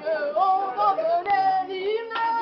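A young woman singing solo, holding notes and sliding between pitches.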